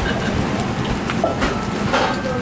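Okonomiyaki sizzling on a hot steel teppan griddle: a steady hiss, with a few light ticks through it.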